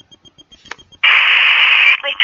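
Loud burst of static hiss from a mobile phone's speaker during a call, starting suddenly about halfway through after a faint click and cutting off sharply about a second later.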